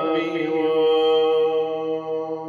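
A male deacon's solo voice sings a Syriac hymn, holding one long, steady note at the end of an ornamented phrase, over a sustained drone.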